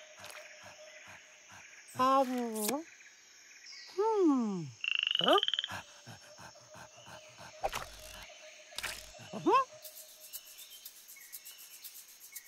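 A cartoon monkey character makes a few short, wordless vocal sounds, pitch gliding down and then up, as he ponders. Under them runs a faint jungle background with a steady hum and soft ticks about four times a second.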